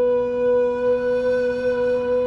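Recorder holding one long, steady note over a sustained low organ drone.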